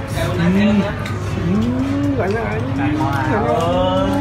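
A person's voice making long, drawn-out low vocal sounds without words, gliding up and down in pitch, over a steady low background hum.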